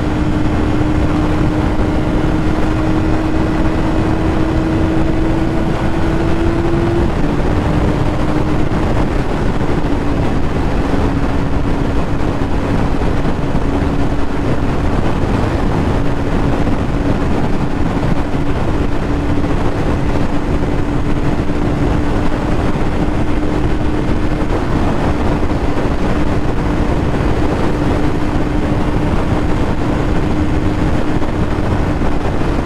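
2005 Yamaha YZF-R6's 600 cc inline-four running steadily at freeway speed, its note creeping up and then dropping slightly about seven seconds in before holding steady. Heavy wind rush over the microphone.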